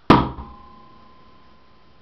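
A thrown metal shuriken hits a door once: a sharp thunk followed by a thin metallic ring that fades within about a second.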